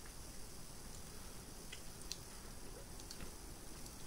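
Quiet room tone with a few faint small clicks scattered through the middle.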